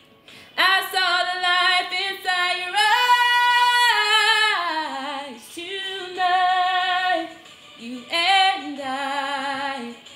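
A woman singing a melismatic ad-lib without clear words, in runs of quick notes. About three seconds in she holds a long high note with vibrato, then glides down, with short breaks between phrases.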